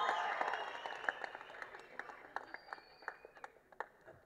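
Audience applause that dies away over the first couple of seconds, thinning to a few scattered hand claps near the end.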